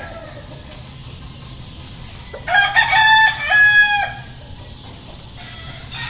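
A gamefowl rooster crows once, starting about two and a half seconds in. It is one loud crow of about a second and a half in several stepped syllables.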